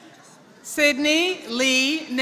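A high-pitched voice from the audience yelling two long cheers, each about half a second, starting less than a second in, as a graduate crosses the stage.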